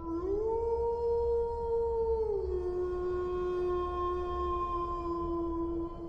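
A long howl: one drawn-out call that glides up at the start, holds for about two seconds, then drops to a slightly lower note and holds it until it stops just before the end.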